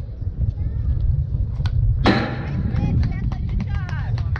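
A single sharp smack about halfway through as a pitched baseball meets the bat or the catcher's mitt, followed by shouting voices, over a steady low wind rumble on the microphone.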